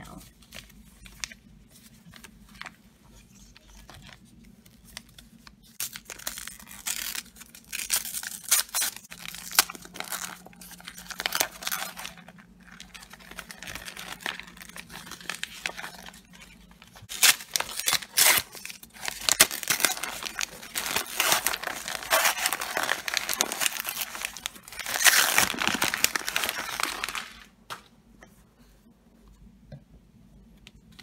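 Wrapping paper being torn and crinkled as a gift-wrapped parcel is opened, in irregular bursts of rustling and ripping that grow loudest in the second half and stop a few seconds before the end.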